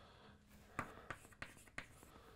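Chalk writing on a chalkboard: faint scraping with a few short, sharp taps as the strokes are made.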